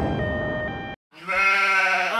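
A noisy music passage cuts off about a second in. After a brief silence a sheep bleats, one long steady call.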